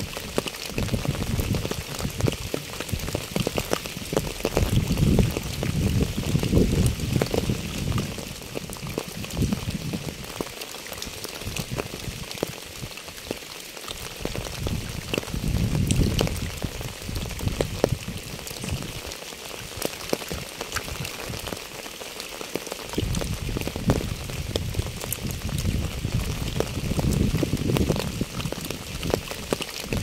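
Rain falling on a wet path and puddle strewn with fallen leaves: a steady patter of many small drops and splashes. Underneath, a low rumble swells and fades several times and drops away twice in the middle.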